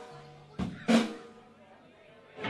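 Two strikes on a rock drum kit, a little over half a second in and again about a third of a second later, each ringing out briefly.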